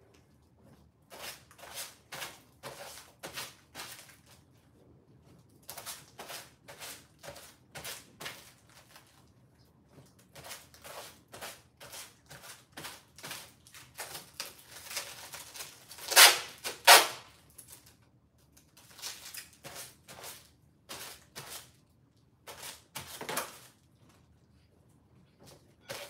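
Clothes rustling in bursts as they are handled and folded, with two louder bursts about two-thirds of the way through.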